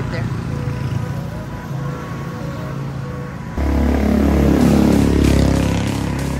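Motorcycle engine running close by over road traffic, suddenly louder with a deep rumble a little past halfway as it comes right up near.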